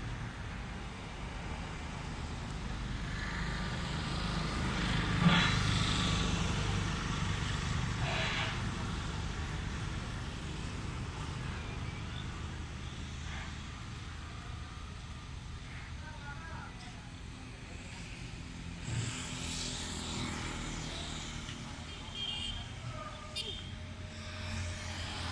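Street traffic running past, with a low engine rumble that swells and is loudest about five seconds in, and scattered voices of people nearby.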